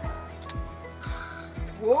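Spinning fishing reel giving off a ratchet-like clicking as a whiting hits the bait, over background music with a steady beat.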